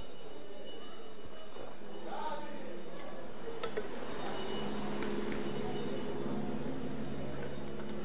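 Finish-line lap bell ringing with metallic clinks, the signal for the last lap of the race. A vehicle engine hum joins about halfway through.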